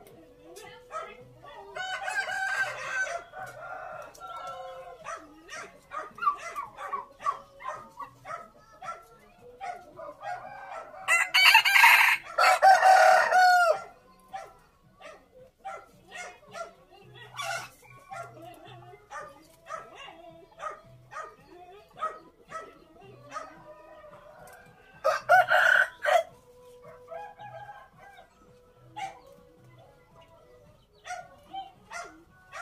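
A rooster crowing three times, the loudest and longest crow about halfway through.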